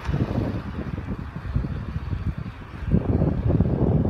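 Wind buffeting a phone's microphone outdoors: an irregular low rumble that grows stronger near the end.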